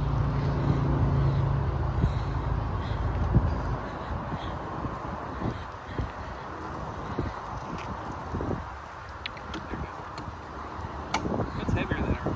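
A low, steady engine hum that stops about three and a half seconds in, then wind on the microphone with a few light clicks and knocks as a car's hood latch is worked.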